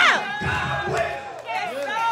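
A preacher shouting and half-chanting into a microphone, opening with one long falling cry, with several voices of the congregation calling back.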